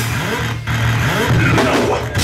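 Live metal band playing loud, heavily distorted electric guitars and bass in a low riff with sliding pitches. The sound stops briefly about half a second in.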